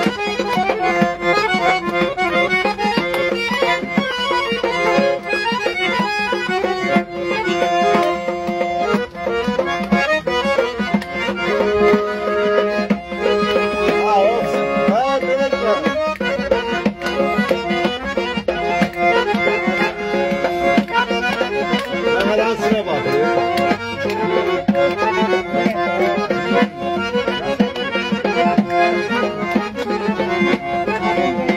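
Azerbaijani garmon (button accordion) playing a folk melody over a steady low held note, accompanied by strokes on a qaval frame drum.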